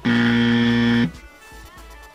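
Game-show style "wrong answer" buzzer sound effect: a harsh, steady buzz lasting about a second that cuts off abruptly.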